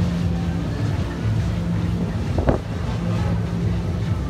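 Steady low drone of boat engines, with wind on the microphone. A brief rising sound stands out about two and a half seconds in.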